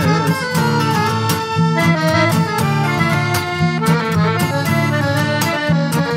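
Piano accordion playing an instrumental melody over a strummed acoustic guitar, with no singing.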